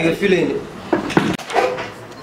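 Voices talking, broken by two sharp knocks about a second in, a quarter second apart.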